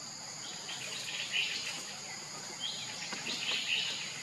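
Outdoor ambience of a steady, high insect drone with birds chirping over it, in short rising calls that come in clusters about a second in and again near the end.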